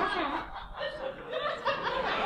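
Audience chuckling and laughing at a comic pause, a loose spread of scattered laughs rather than a full burst.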